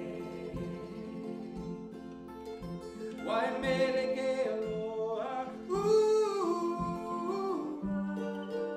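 Acoustic guitar and mandolin playing a song, with a man's voice joining about three seconds in on long, held sung notes.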